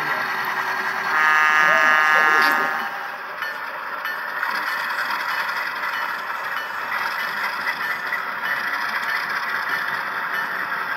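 An HO-scale model diesel locomotive's sound-decoder horn gives one steady blast of nearly two seconds about a second in. It sounds over the steady rolling clatter of the model train running on the track.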